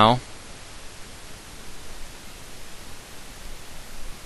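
A spoken word ends right at the start, then only a steady, even hiss with nothing else in it: the noise floor of a recording made on a headset microphone.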